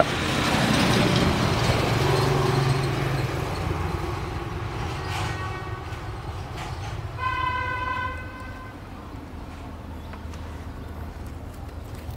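A vehicle passing, its noise loudest at first and fading away over several seconds, then a vehicle horn sounding one steady honk of about a second and a half.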